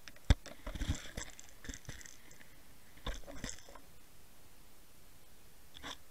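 Underwater camera rig being pulled through the water, picking up one sharp knock about a third of a second in, then scattered clusters of crackling clicks over a faint steady hiss.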